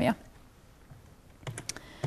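A quick run of sharp clicks from laptop keys about one and a half seconds in: the presenter advancing to the next slide.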